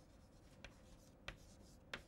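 Chalk writing on a chalkboard, faint: three short sharp taps of the chalk against the board, about two-thirds of a second apart, with light scratching between them.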